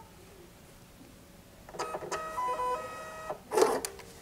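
Label printer feeding out a check-in label. A whining motor that steps between pitches runs for about a second and a half, then a loud clack, likely the cutter, near the end.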